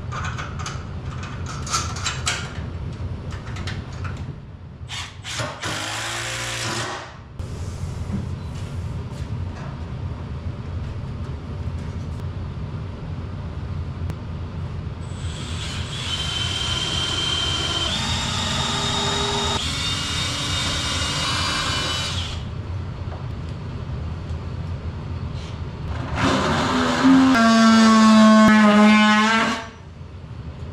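Cordless drill running for about three seconds near the end, its pitch dipping slightly at the start and then holding steady. Before it come scattered clicks and knocks of hand work and a longer steady whirring stretch, over a low hum.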